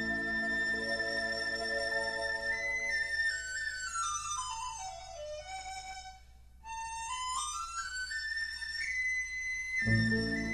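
Background music: a single melody line holds a long high note, then steps down note by note, and about seven seconds in climbs back up step by step to the high note, over a low drone that fades in the first second.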